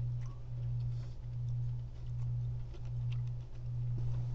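A steady low hum, dipping slightly about once a second, with faint scattered clicks and mouth noises from a man eating sour candy.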